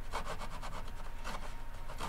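Razor saw cutting a notch across the thin wooden back reinforcement strip on the inside of a guitar back, in quick, short strokes.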